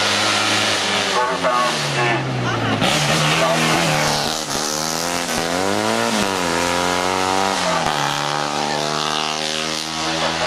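Steyr Puch 650TR's air-cooled flat-twin engine revving hard through a hairpin. Its pitch falls over the first few seconds, climbs to a peak about six seconds in, then drops and holds steady as the car pulls away.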